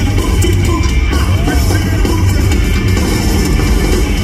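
Rock band playing live through an arena PA: drum kit, bass guitar and electric guitar, heavy in the low end and steadily loud.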